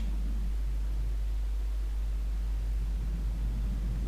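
A pause in the talk with no distinct event: only a steady low hum and a faint background hiss on the recording.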